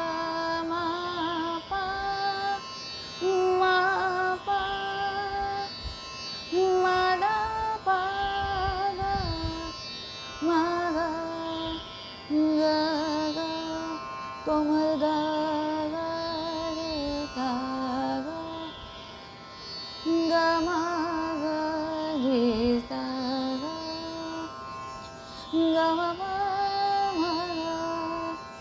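A woman singing an unaccompanied-by-words Hindustani classical phrase in raga Khamaj blended with raga Jog (komal Ga and komal Ni), holding long ornamented notes with a steady drone behind her. A little past the middle the line dips to its lowest notes, in the lower octave.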